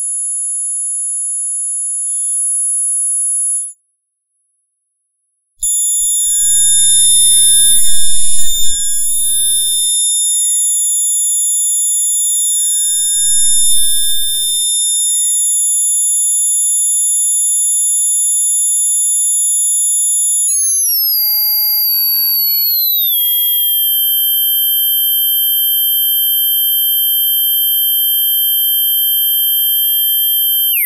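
High-pitched electronic test tones from a GW Instek function generator recorded through a sound card: several steady whistles sound together and cut out for about two seconds near the start. Two knocks come about eight and thirteen seconds in, the first the loudest sound. From about twenty seconds in the tones slide and step down in pitch as the frequency is changed, then hold steady.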